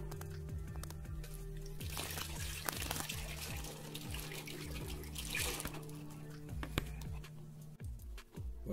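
Liquid tonic poured from a plastic bowl through a plastic funnel into a glass jar, splashing most about two seconds in and again past five seconds, under steady background music.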